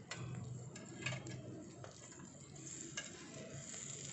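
Quail pieces sizzling faintly on a wire grill over charcoal in a clay pot, with a few light clicks of steel tongs against the metal grate as the pieces are turned.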